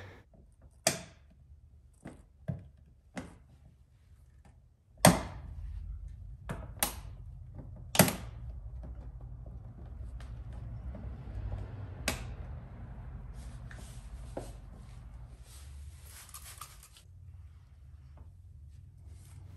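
Sharp clicks and thunks, one every second or few, as a plastic car side scoop is pressed onto the body panel by hand and its mounting tabs pop into place, over a low steady hum.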